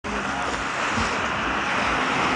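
Steady rush of sea water and wind, with a faint low hum underneath.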